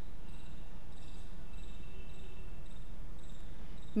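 Steady low background hum with faint, intermittent high-pitched insect chirping, like crickets.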